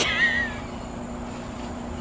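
A young child's short, high-pitched squeal at the start, wavering up and down in pitch for about half a second. A steady high drone of insects runs underneath.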